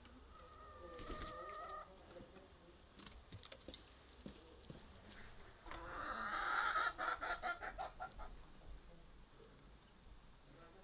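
Domestic chickens clucking: a short held call about a second in, then a louder run of rapid, pulsing clucks from about six to eight seconds in.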